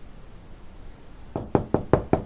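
Quick knocking on a door, a run of sharp raps about five a second that starts past the middle.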